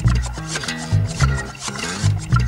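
Background pop-rock song with drums and bass keeping a steady beat, no vocals in this stretch.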